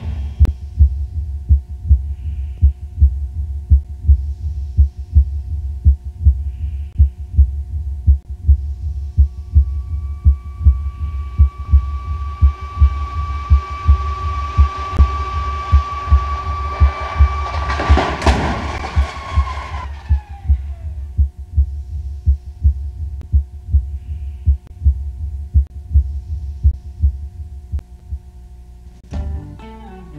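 Suspense soundtrack with a steady low heartbeat-like pulse and held tones. A rush builds for several seconds and ends in one loud crash about 18 seconds in as the test car hits the barrier, followed by falling tones.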